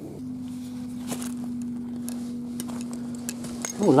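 A steady low hum at one unchanging pitch, with a few light clicks of stones and metal bits being handled on the shingle.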